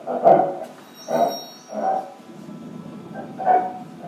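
Live experimental electroacoustic improvisation: four short pitched bursts at uneven spacing, with a brief cluster of high steady electronic tones about a second in.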